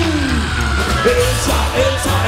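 Live rock-and-roll band playing: a male singer's held note slides down in pitch at the start, then short sung phrases, over electric guitar and a steady bass line.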